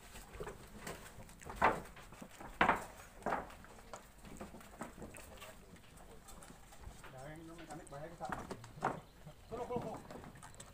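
Wooden knocks and thumps on a plank dock as a narrow racing boat is moved across it. The two loudest knocks come about two and three seconds in, with a few lighter ones later.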